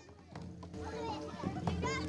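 Faint chatter of a crowd with children's voices, rising out of near silence about a third of a second in.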